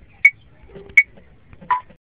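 Metronome ticking at 80 beats per minute: three short clicks about three-quarters of a second apart, the third one lower in pitch.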